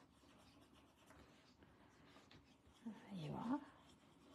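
Faint scratching of a drawing tool worked on a card drawing tile. About three seconds in comes a brief wordless vocal sound that falls in pitch.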